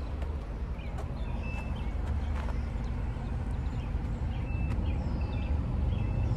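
Outdoor ambience: a steady low rumble with a few faint clicks and several short, high chirps.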